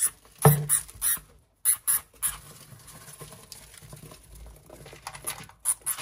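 Dry wood-shaving bedding rustling, with a run of sharp clicks and knocks as a black plastic hamster hide is lifted and handled. The knocks are busiest in the first two seconds and pick up again near the end.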